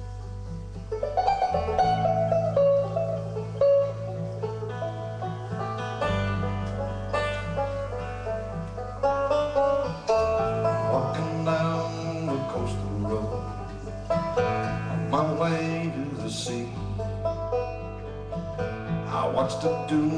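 Live bluegrass trio of banjo, acoustic guitar and bass playing an instrumental passage, the banjo picking its notes over guitar strumming and long held bass notes.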